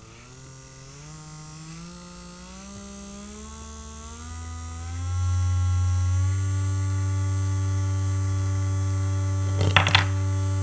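Small DC gear motor running with a whine whose pitch climbs steadily over the first five seconds as its supply voltage is turned up, then holds steady, louder, with a strong low hum. Near the end there is a brief clatter as the wooden figure on its shaft is thrown off onto the table.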